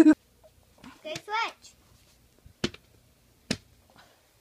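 A child's short vocal sound about a second in, then two sharp clicks a little under a second apart: handling noise as the toys and phone are moved.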